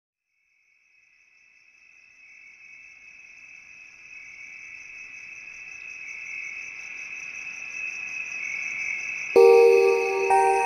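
Cricket chirring, a steady high pulsing trill that fades in gradually over the first several seconds as the opening layer of an ambient music track. Bell-like mallet notes enter loudly about a second before the end.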